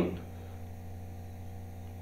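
Steady low electrical hum in the recording, with faint hiss beneath it. The tail of a man's voice fades out right at the start.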